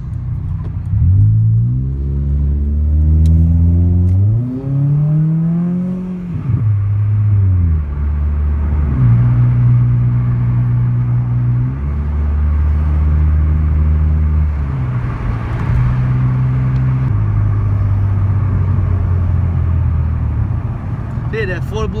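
Honda Accord engine heard from inside the cabin, accelerating through the gears: three rising runs in revs over the first six seconds, each broken by a gear change. It then settles into steady cruising revs that step up and down a few times.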